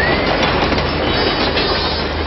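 Train running on rails, a steady clickety-clack rumble with an even low pulse.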